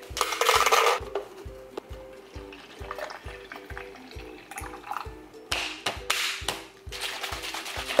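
Cold brew coffee poured into a plastic shaker bottle, heard in two bursts: near the start and again about two-thirds of the way through. Background music with a steady beat plays throughout.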